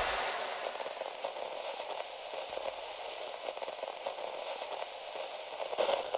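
Faint, steady crackling static, a hiss scattered with small clicks.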